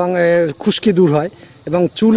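A man talking, with a steady high-pitched insect chorus behind him.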